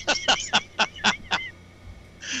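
A man laughing: a quick run of short "ha"s, about five a second, that stops about one and a half seconds in.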